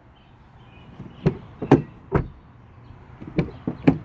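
Chevy Volt's front door being tried: a series of sharp clicks and knocks from the handle and latch, in two groups of three. The door won't open because the crash-damaged front fender, pushed back, pinches it.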